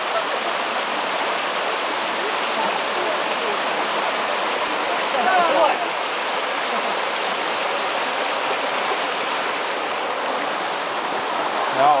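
Shallow mountain stream rushing over rocks: a steady, even rush of water.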